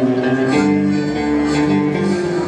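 Live band starting a song, led by guitar, with held chord notes that change about half a second in.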